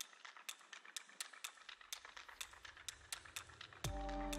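Small plastic LEGO pieces clicking and clattering as they are handled and fitted, with irregular sharp clicks several times a second. Music cuts in with a falling swoop just before the end.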